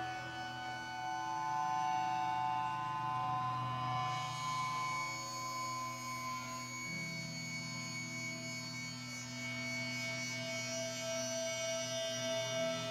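Electric guitars droning through the amplifiers: held, ringing notes with no drums. The layered tones shift pitch about four seconds in and again near seven seconds.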